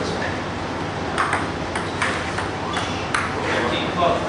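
Table tennis rally: the ping-pong ball clicking back and forth between the paddles and the table, in a quick run of about seven hits starting about a second in.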